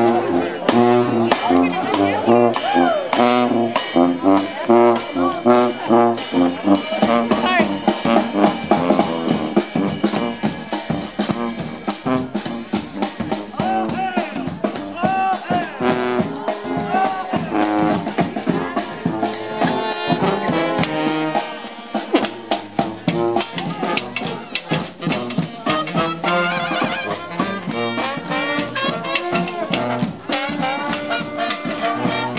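Marching brass band playing jazz in the street: trombone, trumpet, saxophone and sousaphone over a steady beat from a bass drum with a mounted cymbal, with people's voices mixed in.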